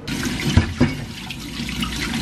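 Kitchen tap running, turned on suddenly, with a few knocks against the sink.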